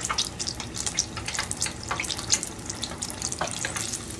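Battered, cheese-stuffed squash blossom shallow-frying in hot oil in a pan: a steady sizzle dotted with frequent small crackles and pops. The blossom is nearly done, turning light golden brown.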